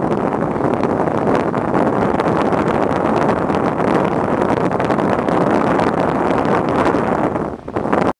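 Steady wind buffeting the microphone aboard a moving cruise boat, with the low rumble of the boat and water underneath. The noise dips sharply near the end.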